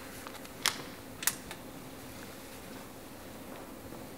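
Two sharp clicks about half a second apart, with a few fainter ticks, over a low steady hum.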